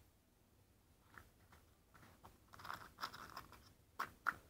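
Faint rustles and light clicks of a small cardboard box being handled in the fingers, busier about two and a half seconds in.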